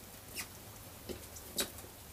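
A few short, soft rustles and ticks, the loudest near the end, from clothing being handled.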